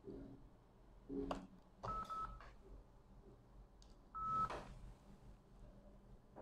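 Faint short electronic beeps with light taps: a low beep near the start and again about a second in, then a higher beep about two seconds in and another about four seconds in.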